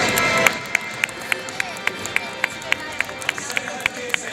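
Music and voice break off about half a second in, followed by a steady run of sharp, even clicks, about three to four a second.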